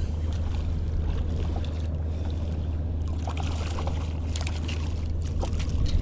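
Steady low hum under a wash of wind and water noise around a fishing kayak while a hooked fish is reeled in, with a few faint splashes in the second half as the fish nears the surface.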